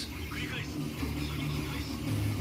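A low, steady hum with a faint, brief voice about half a second in.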